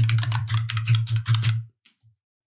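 Computer keyboard typing: a quick run of keystrokes that stops about three-quarters of the way through, over a steady low hum that stops with it.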